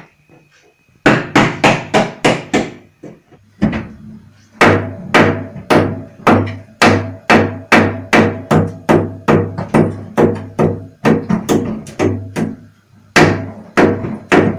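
Hammer blows struck in quick succession, about three a second, each ringing briefly. A run of blows starts about a second in and breaks off before four seconds. A steady run then starts and pauses briefly near thirteen seconds, and the blows resume near the end.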